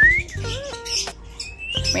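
Parrots giving short chirps and whistles: a quick rising chirp at the start, a curved call about half a second in and another rising chirp near the end, over steady background music.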